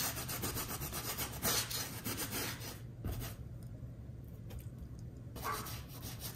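Paintbrush bristles scrubbing acrylic paint onto a canvas in a run of quick, scratchy strokes. The strokes pause for about two seconds in the middle and start again near the end.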